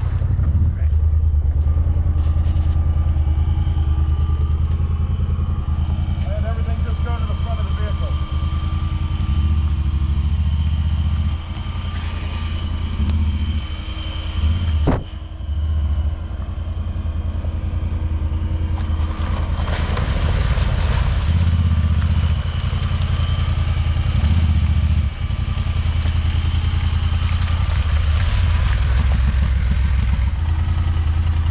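Side-by-side UTV engine running at low revs, swelling and easing as the machine crawls down a steep rocky drop, with a sharp knock about halfway through.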